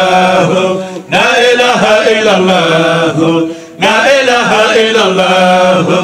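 A man chanting a Sufi zikr (devotional dhikr poem) into a microphone, in long, wavering melodic phrases with short pauses for breath about a second in and near four seconds in.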